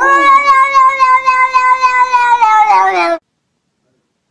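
A cat's long, loud yowl held for about three seconds, dropping in pitch near the end before it cuts off.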